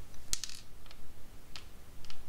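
A few small, sharp clicks and ticks from hands working over the salted watercolor paper on a clipboard: a quick cluster about a third of a second in, a fainter tick near the middle, and another about a second and a half in.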